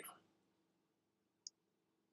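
Near silence, with a single faint, short click about one and a half seconds in.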